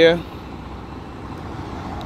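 Steady outdoor background noise of a truck yard: an even, low rumble of distant vehicle engines, after the tail of a spoken word at the very start.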